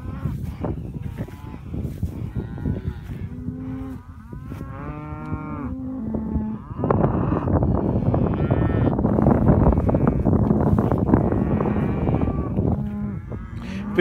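Hereford cattle mooing: several calls that bend up and down in pitch in the first half, then more lowing over a loud rushing noise through most of the second half.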